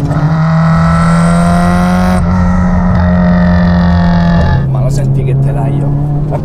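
Turbocharged 2.2-litre stroker Subaru flat-four engine of a 1999 Impreza GC8, heard from inside the cabin, pulling hard in a low gear. Its pitch jumps up at the start and keeps rising, with a short break about two seconds in, then falls away as the throttle eases about four and a half seconds in.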